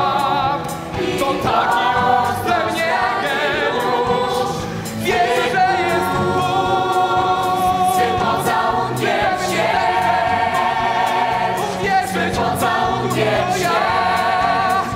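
Stage musical's cast of mixed male and female voices singing together in chorus, long held notes with vibrato, over steady instrumental accompaniment; a single male lead voice is heard at the start.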